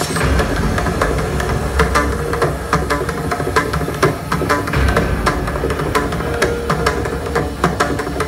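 Mridangam, a double-headed barrel drum, played solo with both hands in fast, dense strokes: crisp ringing strokes on the treble head over deep bass strokes.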